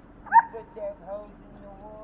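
An American Bully dog gives one loud, sharp yelp, followed by a few shorter, fainter yelps.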